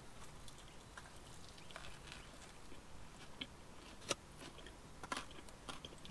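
Faint chewing of a mouthful of fish burger, with a handful of small clicks and crunches scattered through it.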